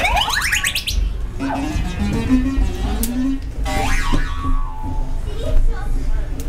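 Electronic sound effect from a SkyTube play-tube's pressure-activated trigger: a rising, whooping pitch sweep in the first second, then a shorter falling sweep about four seconds in, with children's voices between.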